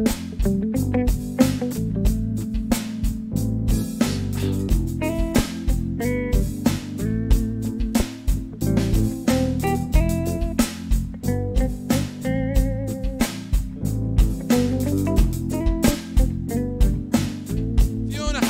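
Electric guitar and a Roland TD-25KV electronic drum kit playing together in a live jam, the drums keeping a steady beat under the guitar.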